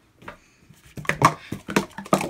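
A quick run of short, sharp clicks and knocks, starting about a second in after a near-quiet moment.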